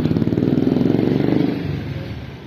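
Motor scooter passing close by, its small engine running loudly with a rapid even beat, then fading away near the end.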